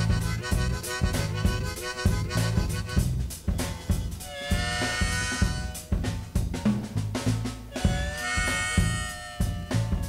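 Instrumental stretch of a song: a drum kit and bass groove, with two held harmonica phrases, one about four seconds in and another about eight seconds in.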